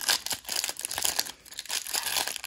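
Clear plastic card wrapper crinkling as a stack of baseball cards is handled and flipped through, with a short lull about a second and a half in.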